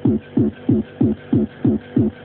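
Fast hardcore techno pattern from a Yamaha RM1x sequencer: a kick drum about three times a second, each hit dropping in pitch, over a steady held tone.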